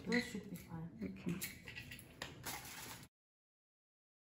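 Quiet conversational speech with a few light clicks, then the sound cuts out to dead silence about three seconds in.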